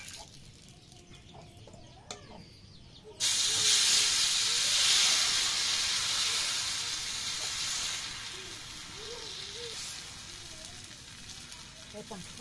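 Rice batter hitting a hot, oiled iron pan: a sudden loud sizzle about three seconds in that slowly dies down as the pancake sets.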